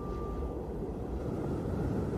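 Low, steady rumbling drone from the closing moments of the music video's soundtrack, with a single held high note that stops about half a second in.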